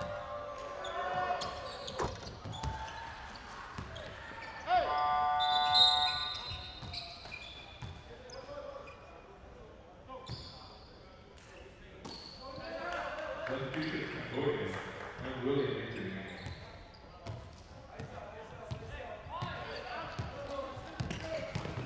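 Basketball bouncing on a hardwood court in a large, echoing hall, with players' voices. A loud held tone rings out about five seconds in, and there is a busier spell of calls and court noise about two-thirds of the way through.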